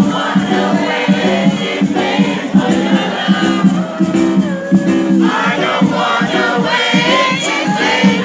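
Live reggae band playing with lead and backing vocals over a steady, repeating bass line, recorded from within the audience, with crowd voices mixed in.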